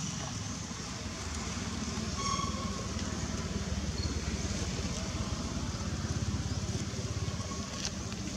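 Outdoor ambience with a steady low rumble, and one short high-pitched call about two seconds in, with a fainter one near the end.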